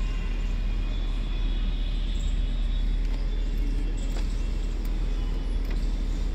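Steady, even vehicle rumble heard inside an SUV's cabin, strongest in the deep bass, with a few faint ticks.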